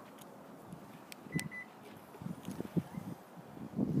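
Two short high beeps from a 2018 Kia Optima answering a press of its key fob, about a second and a half in, with a faint click just before. A few soft low thumps follow.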